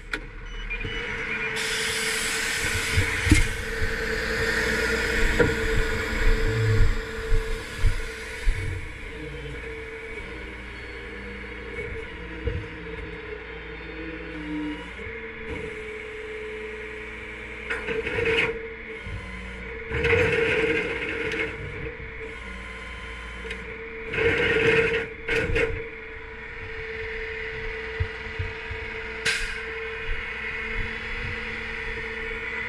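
A flatbed tow truck runs with a steady mechanical hum. Loud bursts of hiss and knocking come in over it, a long stretch in the first few seconds and shorter ones past the middle.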